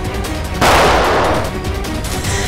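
A single loud gunshot sound effect about half a second in, with a tail that rings on for nearly a second, over background music with held notes.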